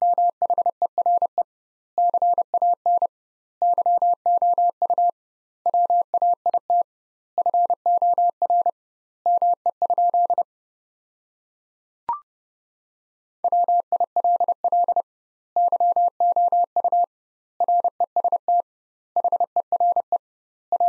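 Computer-generated Morse code at 30 words per minute, a steady tone of about 700 Hz keyed in dots and dashes with double spacing between words. It sends six word groups, repeating the sentence "Where can you wait for me?". About twelve seconds in comes a single short, higher beep, the courtesy tone, and then Morse starts again with the next sentence.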